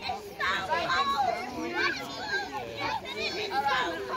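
Several children's voices calling and chattering over one another.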